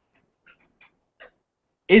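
A pause in video-call audio: near silence with three faint, brief high squeaks, then a voice starts speaking just at the end.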